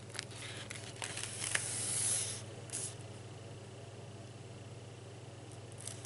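A comic book's paper page being turned: a rustle of paper lasting about two and a half seconds and loudest past the middle, with a few light crackles. A steady low hum runs underneath throughout.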